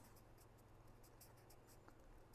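Faint scratching of a pen writing on paper, a quick run of short strokes.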